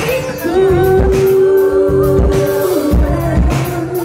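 Live band with a singer holding one long note, which steps down near three seconds, over a steady beat of kick drum and bass.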